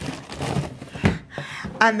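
Knocks and rustling from the plastic freezer drawers of a Samsung fridge freezer and the frozen food bags in them being handled, with a few sharp knocks about a second in.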